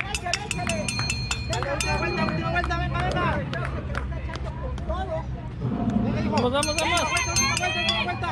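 Several voices of spectators talking and calling out at a running track, with two spells of quick metallic ringing strikes, one early and one near the end.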